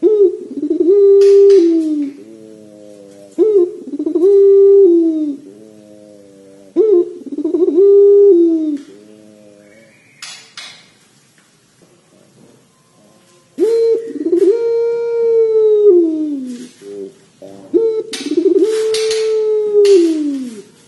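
Domestic ringneck (Barbary) dove cooing. Three level coos come about every three and a half seconds, each dropping in pitch at its end. After a pause it gives two longer drawn-out coos of the 'pelung' style, each ending in a falling tail.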